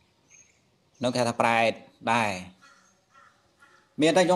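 A man's voice preaching in Khmer: two short phrases about a second in, with pauses before and after them.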